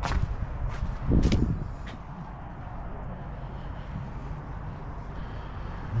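Footsteps and camera handling: a few sharp clicks in the first two seconds and a louder thud about a second in, over a steady low rumble.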